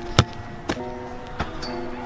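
A football kicked hard on artificial turf: one sharp thud just after the start, followed by two fainter knocks about half a second and a second later. Steady background music plays underneath.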